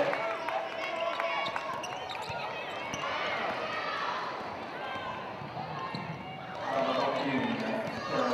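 A basketball dribbled on a hardwood court, with players' voices calling out, loudest near the end.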